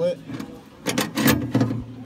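Steel coil main spring of a clay target thrower being hooked through a small eyelet on the throwing-arm mechanism: a short cluster of metal clinks and scrapes about a second in.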